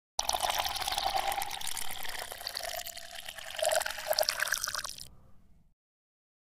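Logo-intro sound effect: a watery pouring and trickling sound that starts suddenly and fades out about five seconds later.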